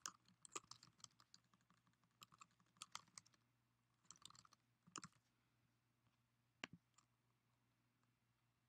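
Faint computer keyboard typing in quick bursts of keystrokes, followed by two single clicks near the end.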